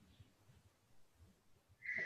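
Near silence: quiet call audio, with a brief faint tone-like sound near the end.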